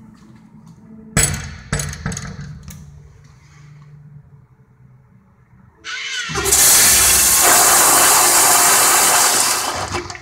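A Zurn flush-valve toilet flushing: a loud, steady rush of water starts about six seconds in and stops abruptly near the end. Earlier, a few sharp knocks.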